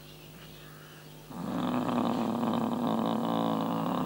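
A long, low, rough moan from a person, held at a steady pitch for about three seconds, starting about a second in.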